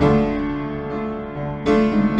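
Piano accompaniment playing slow sustained chords, with a new chord struck at the start and another shortly before the end.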